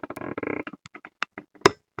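Handling noise as objects are shifted about: a brief voice-like sound at the start, then a few sharp knocks and clicks. The loudest knock comes about one and a half seconds in.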